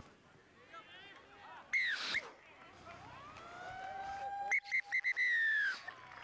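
Referee's whistle: one short blast about two seconds in, then several quick pips and a longer blast near the end. Beneath them, a fainter tone rises slowly in pitch before the pips.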